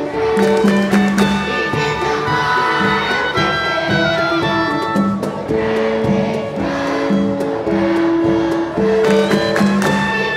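A woodwind quintet (flute, oboe, bassoon and French horn among them) playing with a children's string orchestra of violins, cellos and double basses: a tune of held melody notes over short, evenly repeated strokes.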